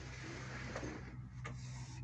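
A steady low hum with two faint clicks, a little under a second apart.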